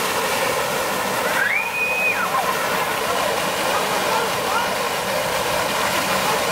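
Water gushing from an open fire hydrant and splashing onto the street, a steady rushing hiss. About a second and a half in, a child gives a short high call that rises, holds and falls, and a fainter one follows later.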